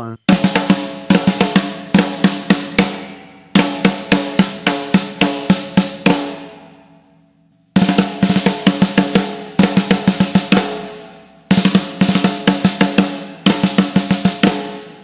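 Snare drum played with sticks in alternating hands: a quick triplet figure played four times with short pauses between, the drum ringing out after each phrase.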